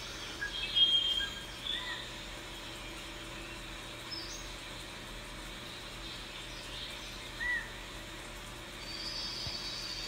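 A few faint, short bird chirps, spaced several seconds apart, over a steady low background hiss.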